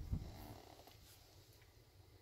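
Faint steady low hum of the 2012 Lancer Ralliart's electric cooling fans running, which the car switches on while its ECU is being reflashed. A couple of soft low thumps come right at the start.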